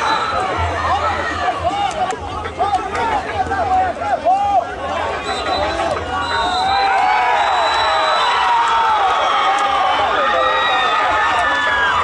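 Spectators at a football match shouting and cheering, many men's voices calling out over each other.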